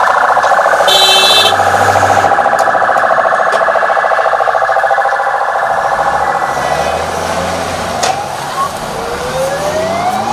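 Electronic police siren on a convoy vehicle sounding a fast, continuous warble, easing off after about seven seconds, then rising whoops near the end. A brief high beep comes about a second in.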